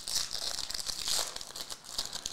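Foil wrapper of a Prizm football card pack crinkling as it is opened and the stack of cards is pulled out, an irregular crackle throughout.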